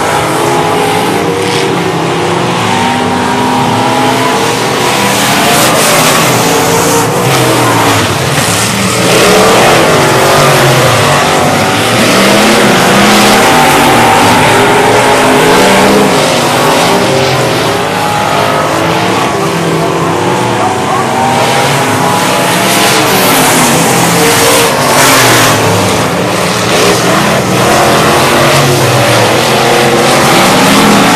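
Several dirt-track limited modified race cars running laps together, loud and continuous, their engines rising in pitch as they accelerate and falling as they back off, the notes of different cars overlapping.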